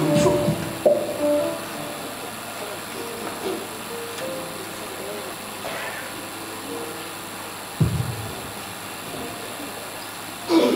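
Quiet instrumental music with faint voices in a hall, with a single thump about eight seconds in.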